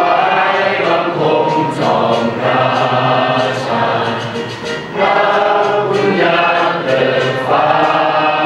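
A choir singing a slow song in sustained phrases of a second or two each, with short breaths between the phrases.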